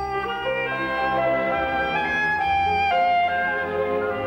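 Solo clarinet playing a melodic line of held notes over a string orchestra, in a romance for clarinet and symphony orchestra.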